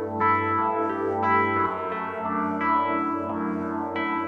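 Live rock band playing an instrumental passage of sustained, effects-laden guitar chords that ring on, with a new chord struck about every second and a half.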